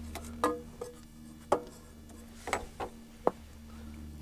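Hand tools and metal hardware clicking and knocking, about seven sharp strikes, a couple ringing briefly, as a voltage regulator is bolted up under an ATV's rear fender. A steady low hum runs underneath.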